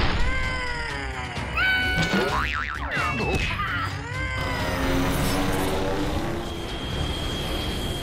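Cartoon sound effects over background music: a wobbling boing and whiny cries that slide down in pitch, for a monster dazed by a blow to the head.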